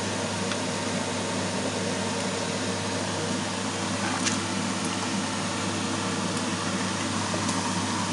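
Water boiling in a frying pan full of CDs and DVDs, a steady bubbling hiss, with a couple of faint clicks of a knife against the discs.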